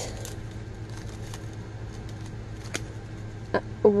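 Small plastic bags of diamond-painting drills being handled, giving a faint crinkle and a few light, scattered clicks over a steady low hum.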